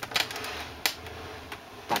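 Knitting machine carriage pushed across the needle bed, knitting a row: a steady sliding clatter lasting nearly two seconds, with a sharp click about a second in and another near the end.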